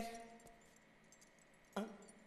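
A quiet pause in the dialogue with faint room tone. The last word of a man's voice fades out at the start, and a short faint sound comes near the end.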